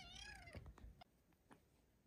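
A young tabby kitten gives one short, quiet meow that rises and then falls in pitch, followed by a few faint ticks.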